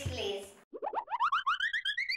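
A cartoon-style sound effect: a rapid run of short chirping notes climbing steadily in pitch, starting about two-thirds of a second in. Before it, in the first half second, the tail of a voice or music fades out.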